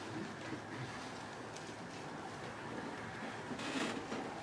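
Quiet hiss of a church hall heard through a handheld microphone, with faint rustling of Bible pages being leafed through; a slightly louder rustle comes near the end.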